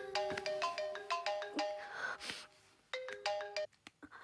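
Mobile phone ringtone: a melodic phrase of short chiming notes that pauses about two and a half seconds in, starts again, and cuts off suddenly near the end as the call is answered.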